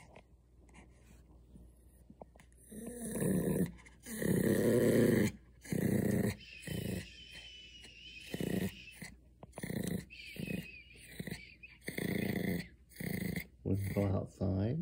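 Pomeranian growling in about a dozen short rumbling bursts, roughly one a second, starting about three seconds in, with the first two the loudest and longest, through a rubber toy held in his mouth. It is a warning growl as a hand reaches for the toy: he is guarding his treat turtle.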